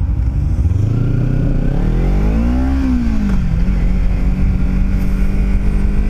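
Kawasaki Ninja 300's parallel-twin engine revving up under acceleration for about two seconds, then the revs fall back and hold steady as the bike cruises, over a low rumble.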